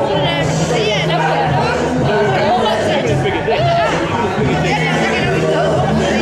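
A northern soul record playing loudly over a club sound system, its vocal line and bass running on steadily, with people chatting over it.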